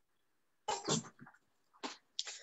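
A person coughing: one cough about a third of the way in and a second, shorter one near the end.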